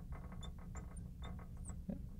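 Marker squeaking faintly on a glass lightboard while writing, in a few short high chirps over a low steady hum.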